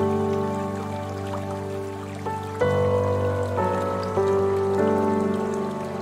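Slow, calm piano music, with new notes or chords struck at about one to two second intervals and left to fade. A faint splashing-water sound runs underneath.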